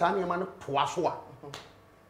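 A man speaking in short bursts, trailing off into a pause near the end.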